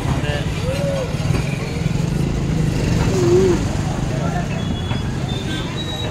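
Busy street ambience: scattered voices of passers-by and vendors over a steady rumble of traffic.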